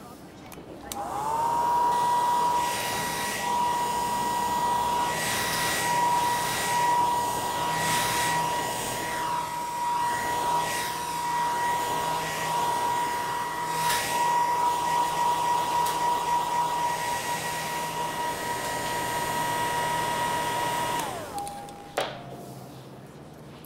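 Hand-held hair dryer switched on about a second in, its motor whine climbing to a steady high pitch over rushing air that swells and ebbs, then switched off near the end with the whine falling away.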